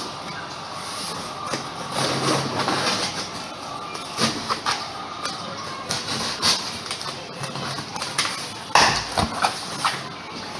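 Cardboard shipping box being opened by hand: flaps and cardboard scraped, pulled and rustled in a string of short, sharp crackles and knocks, loudest in a burst a little before the end.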